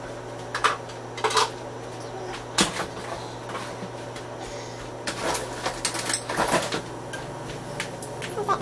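Scattered light knocks and clatter of kitchen items, single ones in the first few seconds and a quicker run of them about five seconds in, over a steady low hum.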